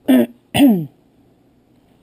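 A person clearing their throat close to the microphone: two short, loud bursts about half a second apart, the second falling in pitch.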